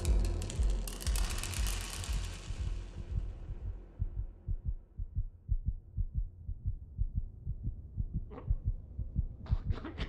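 Film sound design: small pills clattering as they scatter across a wooden floor over a low boom that fades, then a steady heartbeat of low thumps, the heart of a man poisoned by the pills, with short breaths near the end.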